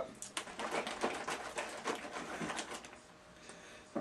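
Plastic shaker cup of smoothie mix being shaken by hand, its contents knocking inside in quick irregular strokes, about six a second. The shaking stops about two and a half seconds in, and a few fainter knocks follow.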